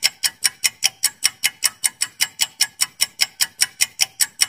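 Countdown-timer tick sound effect: rapid, even clock-like ticks, about five a second, marking the seconds while the answer is withheld.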